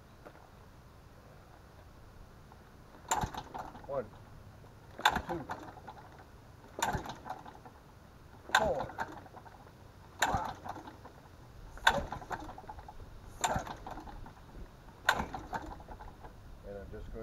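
McCulloch 72 hp four-cylinder two-stroke engine being cranked by hand pull about eight times, one pull every second and a half to two seconds, each giving a sharp start and a whir that falls in pitch as the engine spins down. It does not fire: a hard-starting engine.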